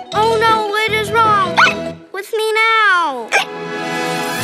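A little girl's cartoon voice making drawn-out wordless vowel sounds over music with a low bass line. About two seconds in, the music drops out and the voice gives one long cry that slides down in pitch.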